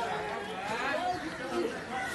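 Indistinct chatter of several people's voices.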